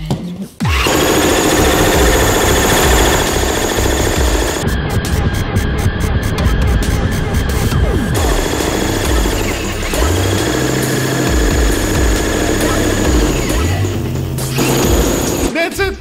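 Corded electric jackhammer running nearly continuously for about fifteen seconds, its chisel bit hammering into and chipping through a slab of bulletproof glass. It starts suddenly just under a second in and stops shortly before the end.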